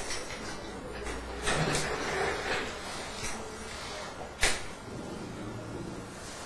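Rustling handling noise for about a second, then a single sharp click a little after the midpoint.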